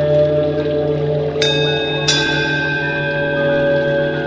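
Ambient meditation music: a steady, sustained drone of layered tones, with two bright chime strikes about a second and a half and two seconds in, ringing on as they fade.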